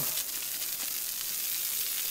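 Garden hose spray nozzle sending a steady hissing spray of water into shrubs.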